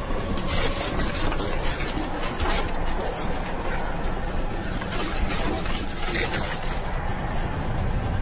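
Horror-film sound design: a dense, steady rumble broken by several short, sharp swells of noise, with music underneath.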